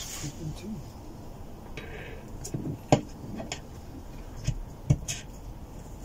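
A few metallic clinks and knocks as a motorcycle engine's one-piece crankshaft is set down into its aluminium crankcase half. The sharpest clink comes about three seconds in, with two lighter knocks near the five-second mark.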